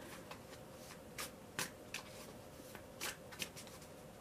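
Faint, scattered clicks of a tarot deck being handled and shuffled in the hand, about half a dozen light card snaps spread unevenly over a few seconds.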